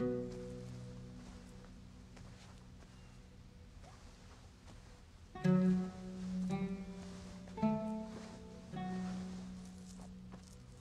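Soft film score music on string instruments: a low note at the start that fades within a second, then, from about halfway, a slow phrase of four held low notes.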